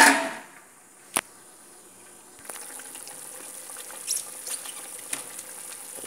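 A clatter at the start and a sharp click about a second later. From about two and a half seconds in comes the steady faint bubbling and hiss of a pot of vegetables boiling hard in soy-sauce broth.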